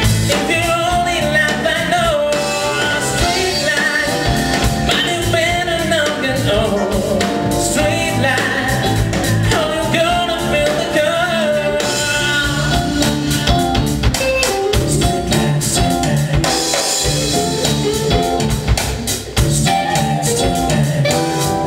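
Live smooth-jazz band with a male lead vocalist singing over drum kit, bass, keyboards and guitar. The sung line is most prominent in the first two thirds, and the band plays on under it.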